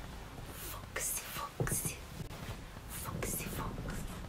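A woman whispering in short, breathy bursts.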